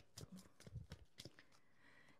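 Near silence, with a few faint, short clicks of tarot cards being handled and shuffled between the fingers.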